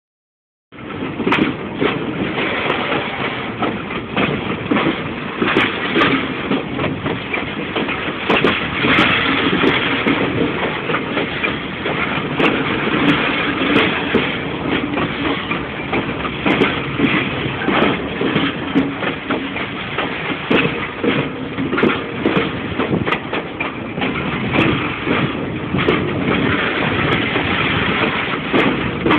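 Freight train wagons rolling slowly on the rails: a steady rumble with frequent clanks and knocks from wheels and couplings.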